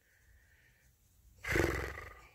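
Near silence, then about one and a half seconds in a man lets out a short, loud, breathy huff of frustration close to the microphone, fading within half a second.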